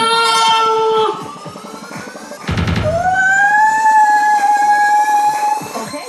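Music: long held notes, the second sliding up in pitch and then holding, with a short crash-like burst about two and a half seconds in.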